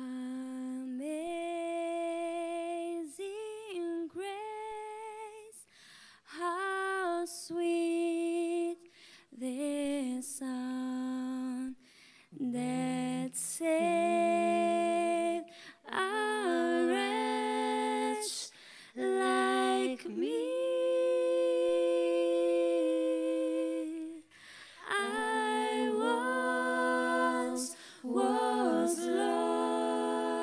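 A young woman singing a gospel solo into a microphone, in sung phrases of a few seconds separated by short breaks, with little or no accompaniment.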